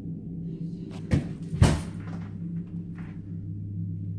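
Two sharp knocks about half a second apart, with a short echo, over a low steady hum: the unexplained noises heard from the basement below.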